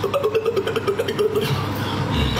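A woman making a loud, rapidly fluttering buzzing noise with her voice close to the microphone, held on one pitch for about a second and a half.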